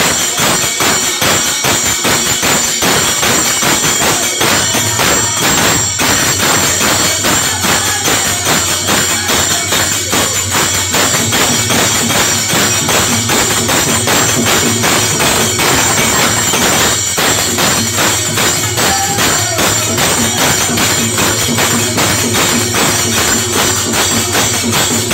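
Devotional bhajan music without words: fast, steady clashing of hand cymbals over a dholak barrel drum and hand claps. A harmonium drone comes in about four seconds in.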